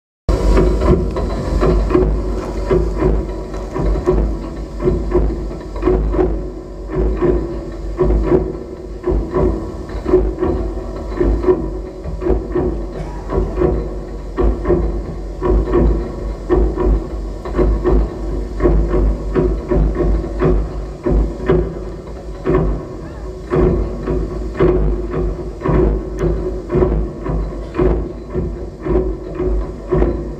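Live experimental music set: a dense, clattering texture of many short knocks and clicks over a heavy deep rumble and a steady held mid-pitched tone, pulsing irregularly about once or twice a second.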